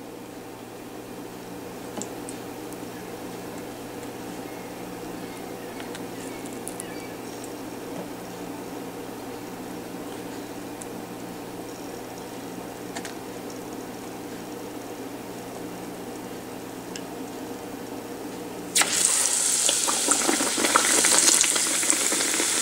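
A batter-coated eggplant slice frying in hot oil in a pan: a loud sizzle that starts suddenly near the end. Before it there is only a low, steady hum with a few faint clicks.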